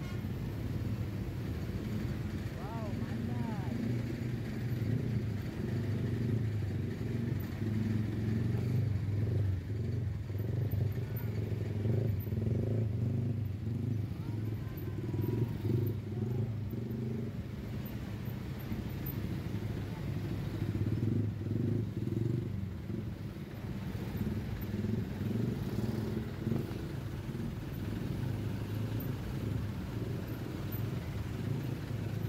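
Engines of slow, congested traffic, with motorcycles close by and buses and a truck around them, making a steady low noise that swells and eases as the vehicles creep forward.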